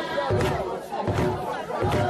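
A crowd of voices chanting together loudly, with a low thud about every three-quarters of a second keeping a steady beat.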